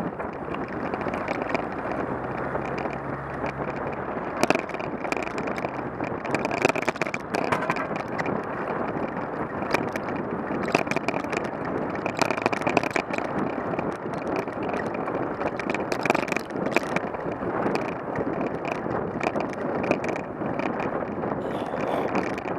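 Wind buffeting the microphone of a moving bicycle, over steady road noise. From about four seconds in there are frequent sharp rattles and knocks.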